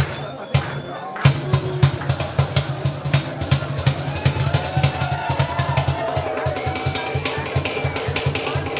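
Live acoustic band playing an instrumental jam: bass guitar, acoustic guitar, banjo and hand drums. A fast, driving beat fills out about a second in, with a lead line winding above it.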